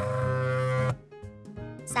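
A low, steady buzzing tone from a cartoon sound effect, lasting just under a second as the X-ray scanner slides into place. It is followed by sparse, light children's background music.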